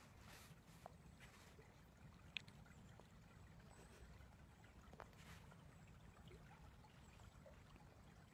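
Near silence: a faint low rumble with a few soft clicks, one a little sharper about two and a half seconds in.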